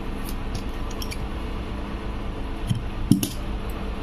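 Scissors snipping through a short length of cotton drawstring, one sharp snip about three seconds in, preceded by a few faint handling clicks over steady low background noise.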